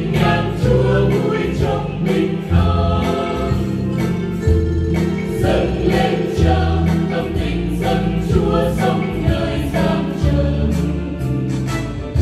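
A church choir singing a Vietnamese Catholic hymn in Vietnamese, with instrumental accompaniment and a steady bass line.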